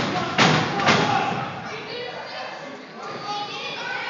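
Three heavy thuds on a wrestling ring in quick succession within the first second, as wrestlers hit the canvas, ringing through the boards of the ring. Crowd chatter and children's voices run underneath in a large hall.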